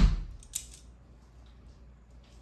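A heavy thump at the start, then a sharp click about half a second in, as a small plastic transforming dinosaur toy is worked by hand and its parts click into place.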